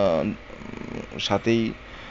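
A man's voice speaking in two short bursts. In the pause between them comes a brief, quieter, rapid rattling buzz lasting about half a second.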